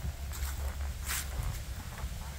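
Footsteps over grass strewn with dry fallen leaves, with a brief rustle about a second in, over a low steady rumble.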